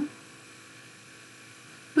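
A pause in the talk: faint, steady electrical hum and hiss, the background noise of the recording.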